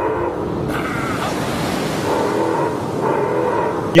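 Ocean surf washing in a steady rush, with a few faint steady tones underneath.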